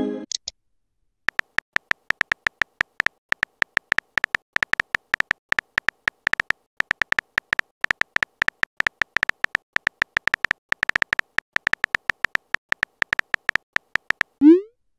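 Phone keyboard typing clicks: a rapid, irregular run of short sharp ticks, several a second, starting about a second in. A brief message notification sound fades out at the very start.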